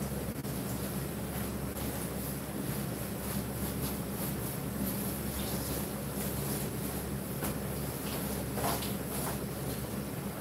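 A steady low mechanical hum, like a motor or fan running, with a few faint short scrapes or taps near the end.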